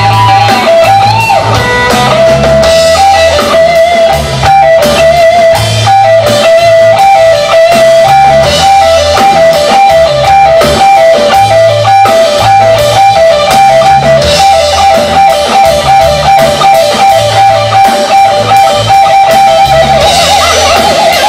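Live rock band playing an instrumental passage: an electric guitar lead repeats a short high melodic figure over bass notes and a drum kit, with no singing.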